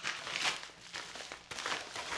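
A paper mailer envelope being handled and torn open by hand: scratchy rustling and tearing in short, irregular bursts.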